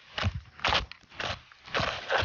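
Dry sticks and brush crunching and snapping close to the microphone, about four short crunches roughly half a second apart.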